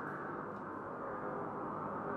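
Soft, muffled ambient music, steady and without a beat.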